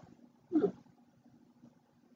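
A person's voice giving one short "huh" about half a second in, then near silence.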